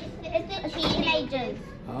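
Young children's voices chattering and calling out, high-pitched and indistinct.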